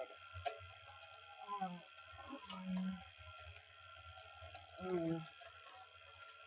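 Faint scattered clicks and knocks of someone rummaging through things off-camera while searching, over a low steady hum. A woman's voice murmurs 'oh' and hums 'mm' a few times in between.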